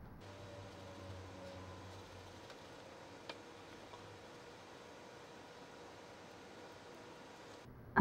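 Quiet room tone: a low steady hiss with a faint hum in the first couple of seconds, and one faint click a little after three seconds in.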